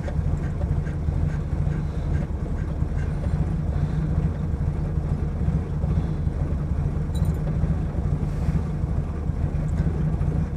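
A car engine idling steadily, heard from inside the cabin.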